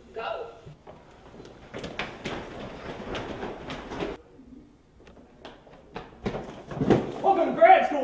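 A run of sharp thumps and knocks, then a man shouting near the end.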